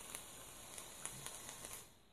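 Wet coils in an Oumier VLS rebuildable dripping atomizer sizzling faintly with a few small pops as the mod fires them, the liquid boiling off as vapor. The sizzle cuts off near the end.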